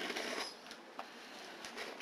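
Scissors cutting into a cardboard box: a short scraping cut in the first half second, then quieter, with a sharp click of the blades about a second in and a few faint clicks later.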